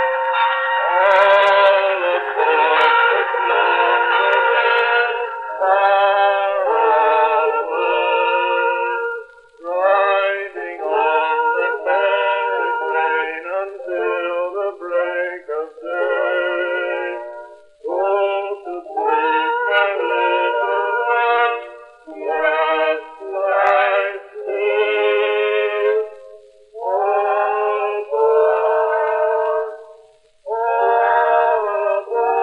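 Male voices singing on a 1902 acoustic recording of a vocal duet, the sound thin and narrow with no deep bass or high treble, in short phrases with brief gaps.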